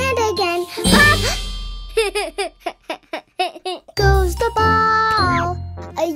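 Children's song music in which a jack-in-the-box pops open about a second in, with a loud sudden cartoon pop-and-whoosh effect. A run of short, quick, falling sounds follows, then a child's voice over the music.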